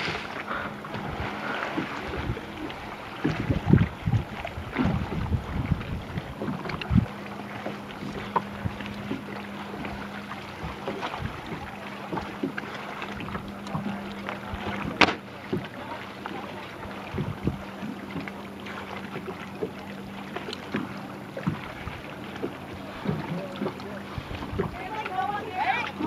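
Outdoor ambience on the water: wind on the microphone and water noise, with faint, indistinct voices. A steady low hum sets in about seven seconds in, and there is a single sharp click about halfway through.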